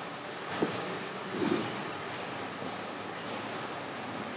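A wooden stool is moved and sat on: one light knock on the floor about half a second in, then a brief shuffle about a second later, over a steady faint hiss of room tone.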